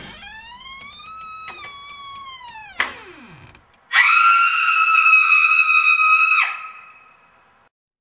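Film soundtrack effects. A high tone rises a little and then dives steeply in pitch. A sharp hit comes near three seconds in, then a loud steady high tone is held for about two and a half seconds before fading.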